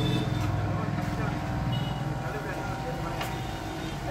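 Steady low rumble of an engine running, with fine rapid pulsing.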